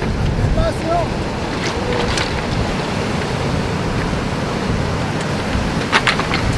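Surf breaking on a rocky shore, with wind buffeting the microphone. A few short voice sounds come in the first second or so.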